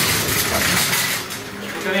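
Wire shopping trolley clinking and rattling as it is rolled over the elevator's metal door sill into the car, loudest in the first second and then easing off.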